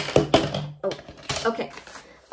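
Paper-and-plastic toolkit pouch rustling and clicking as small diamond painting tools are handled and pulled out, with several sharp clicks in the first half-second. A hummed, murmured voice runs under the handling noise.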